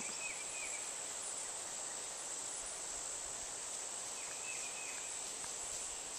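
Steady outdoor ambience of an insect chorus, with faint short chirps twice, shortly after the start and again past the middle.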